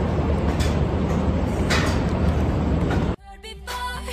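Steady outdoor noise with a low rumble, picked up by a handheld phone's microphone while walking. About three seconds in it cuts off abruptly to background music with held notes.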